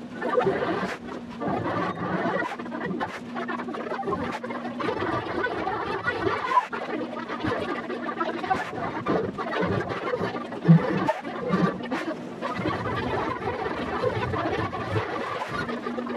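Fast-forwarded sound of a stage play: voices and stage noise run together into a busy, jumbled chatter, with frequent short knocks and a steady low hum.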